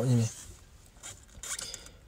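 A voice narrating a story in Karen ends a word with a short hiss, then pauses, with only faint low sounds in the gap.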